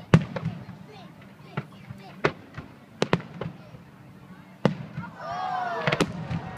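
Aerial fireworks shells bursting: a string of sharp bangs roughly a second apart, the loudest just after the start.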